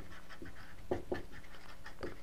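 Dry-erase marker writing on a whiteboard: a few short strokes, over a faint steady hum.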